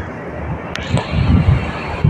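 Wind buffeting a handheld phone microphone outdoors, an uneven low rumble over steady street background noise, with one sharp click about three-quarters of a second in.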